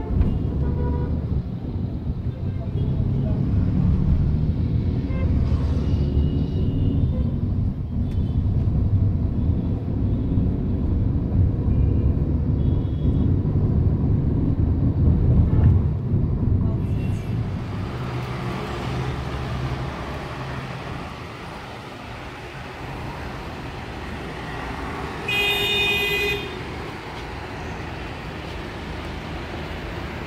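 City street traffic heard from a moving vehicle: a heavy engine and road rumble that eases about two-thirds of the way through, with short horn toots. Late on, one loud horn blast lasts about a second.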